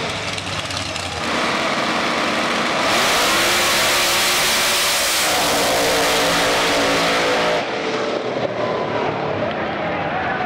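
Drag race cars, a red Corvette among them, launching and accelerating hard down the strip, engines at full throttle with the pitch climbing and dropping as they shift. The sound changes abruptly a few times, and the engines sound more distant in the last couple of seconds.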